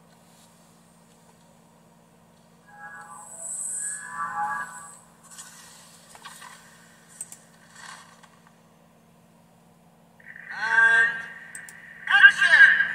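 Soundtrack of a film playing on the laptop: brief pitched, voice-like sounds and sound effects a few seconds in and again near the end, over a steady low hum.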